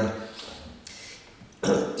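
A man clears his throat once, a short rough sound near the end after a quiet pause.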